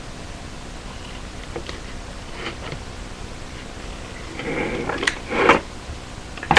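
Paper being handled and cut with scissors: faint rustles, then a louder stretch of rustling about four and a half seconds in with two sharp snips.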